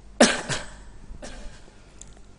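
A person coughing: two sharp coughs in quick succession near the start, then a fainter third cough.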